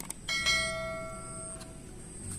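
A single bell-like ding from a subscribe-button animation's notification sound effect. It comes after a soft click about a third of a second in, and its several ringing tones fade out over about a second and a half.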